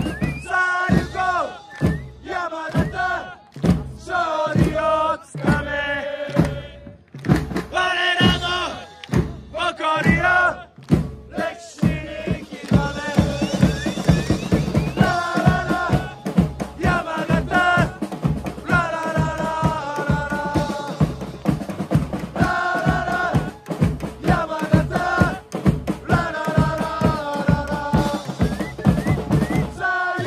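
A section of football supporters chanting and singing in unison, in repeated phrases, over a steady drumbeat.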